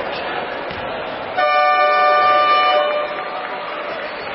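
Basketball arena horn at the scorer's table sounding once, a loud steady buzzing blast of about a second and a half starting about a second and a half in, signalling the end of a break in play. Crowd hubbub runs underneath.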